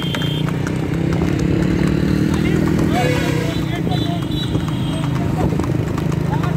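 Horse hooves clip-clopping fast on asphalt as horse carts race along the road, over a steady engine drone from traffic running alongside. Men's voices call out to the horses around the middle.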